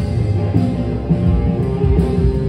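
Live rock band playing loudly: electric guitar over bass and drums.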